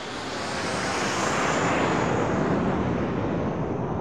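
A broad rushing noise that swells over the first second or so, holds, and starts to fade near the end, with a faint high tone slowly falling in pitch, heard in a film scene's playback audio.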